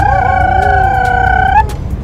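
A person singing one long high note with vibrato, swooping up into it and holding it for about a second and a half before breaking off, over the low rumble of the bus engine.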